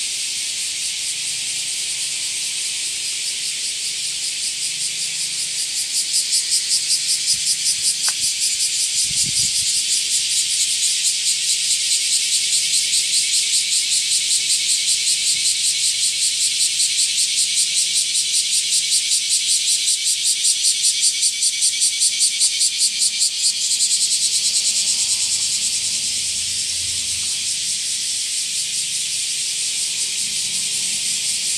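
Cicadas buzzing in a loud, high-pitched drone. About six seconds in, the call swells into a fast pulsing that runs until near the end, then eases back to a steady buzz.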